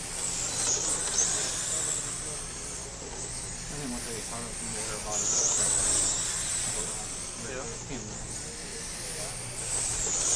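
Radio-controlled late model race cars lapping a dirt oval: a high-pitched motor whine with tyre hiss that swells and fades as the cars pass, loudest about halfway through. Faint voices sound underneath.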